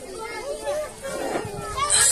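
Children's voices talking and calling out in a gap between music, with a burst of music starting right at the end.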